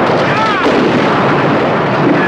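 Sampled gunfire and explosions in a loud, dense wash of noise from a late-1980s electronic breakbeat record, with a short arching whine about half a second in.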